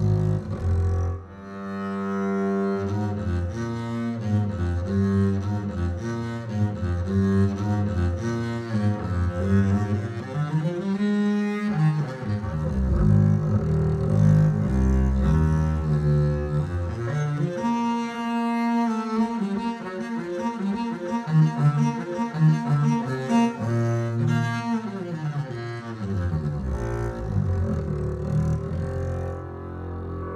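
Sampled orchestral double bass (Leonid Bass Kontakt library) played legato from a keyboard in the sul ponticello articulation: bowed phrases of connected notes with a scratchy tone from bowing close to the bridge.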